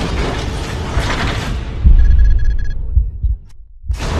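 Logo-animation sound effects: a dense whooshing rush, then about two seconds in a deep boom with a quick string of electronic beeps, which fades away. A fresh burst of noise starts right at the end.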